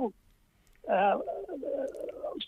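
A short pause, then about a second in a person's voice with a drawn-out, hesitant vowel sound running into speech.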